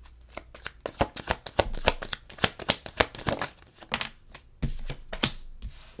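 A deck of tarot cards being shuffled and handled: a rapid, irregular run of crisp card clicks and flicks, with a louder stretch near the end.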